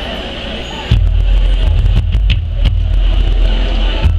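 A marching band and its front ensemble start their show about a second in: a sudden, loud, deep sustained chord with sharp percussion hits over it. Before that, a crowd murmurs.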